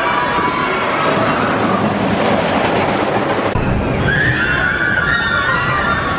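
Giant Dipper wooden roller coaster train rumbling along its track, with riders screaming on the drop. The rumble grows heavier about halfway through.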